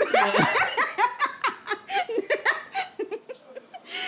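A woman and a man laughing heartily, a quick run of laughs that thins out near the end.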